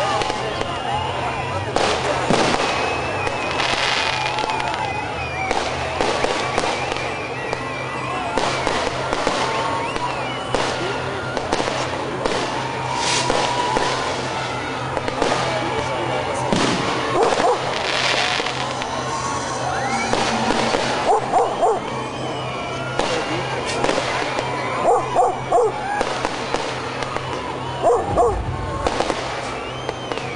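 Fireworks going off over and over, a run of bangs and crackles, with a crowd's voices shouting among them.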